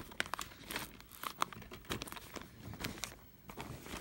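Plastic disc cases being handled on a fabric blanket: scattered light clicks and rustles, mixed with the handling noise of the phone being moved.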